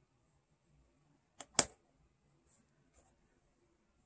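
Two light clicks close together about a second and a half in, the second louder, over quiet room tone.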